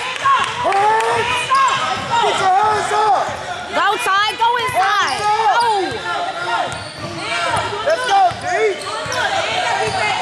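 Basketball shoes squeaking again and again on a hardwood gym floor as players run and cut, with a basketball being dribbled. There is a quick run of squeaks about four seconds in.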